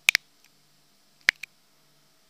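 Sharp clicks in two close pairs, one just after the start and one about a second and a quarter in, over a faint steady hum.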